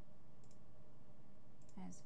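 A single faint computer-mouse click about half a second in: a point being set on a polygon lasso selection. It sits over a steady low background hiss.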